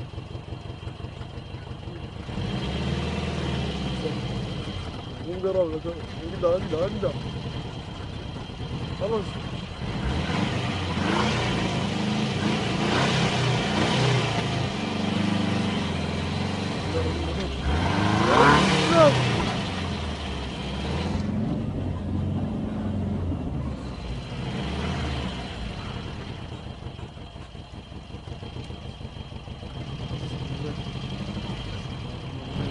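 A car engine running, heard from inside the cabin, picking up about two seconds in and dropping back later. Voices call out around six seconds in and again, loudest, past the middle.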